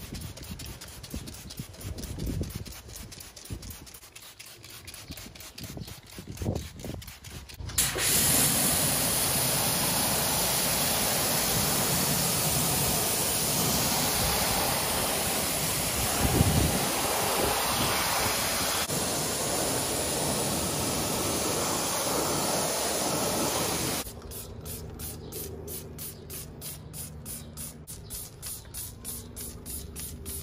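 A steady, loud hiss of a high-pressure water spray rinsing a car wheel, starting about 8 seconds in and stopping sharply some 16 seconds later. After it comes a quieter, quick back-and-forth scrubbing of a brush on the foamed tyre sidewall.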